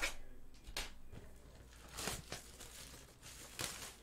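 Plastic shrink-wrap being torn and crinkled off a sealed trading-card hobby box, in a few short, faint rips.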